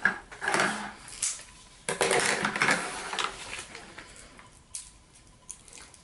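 Scissors snipping and the cardboard packaging of a small toy blind box rustling as it is cut and pulled open. The sound comes in a few short noisy bursts with light clicks, the longest from about two to three seconds in.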